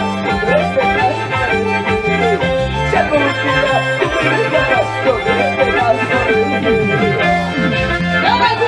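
Live band playing an instrumental passage of a carnaval tune: a reedy, accordion-like keyboard melody over a repeating bass line and a steady beat.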